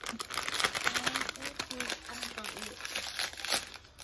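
Foil-lined plastic snack bag crinkling as it is handled and pulled open, a dense run of crackles throughout.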